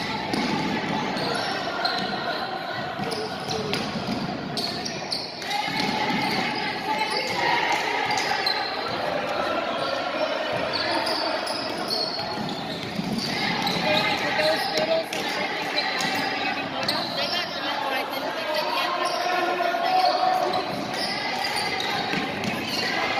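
Basketball being dribbled on a hardwood gym floor during a game, with players', coaches' and spectators' voices carrying through the echoing gym.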